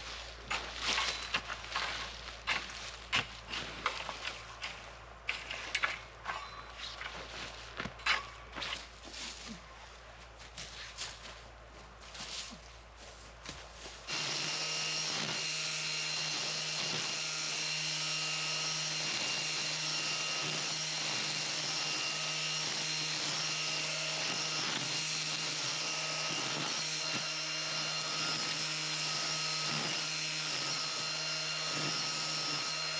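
A rake dragging and spreading wood-chip mulch in short, irregular scraping strokes. About halfway through this cuts abruptly to a cordless electric string trimmer running steadily at constant speed as it cuts grass.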